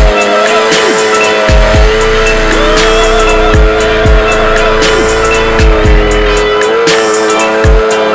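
Hip-hop music with a heavy beat and deep falling bass notes, over a sport bike's engine held at high revs with tyre squeal during a smoky burnout.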